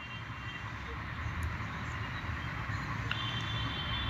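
Steady background noise of distant city traffic, growing slightly louder, with a faint thin high tone joining about three seconds in.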